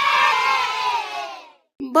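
A group of children cheering together, a stock 'yay' cheer sound effect marking a correct quiz answer; it fades out about a second and a half in.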